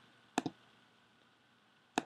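Two short, sharp computer mouse clicks about a second and a half apart, with near silence between them.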